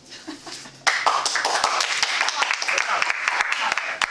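Audience applauding, starting suddenly about a second in and keeping up a dense, steady clapping.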